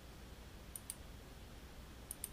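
Two quick computer mouse clicks in close succession, a little under a second in, over a faint steady low hum.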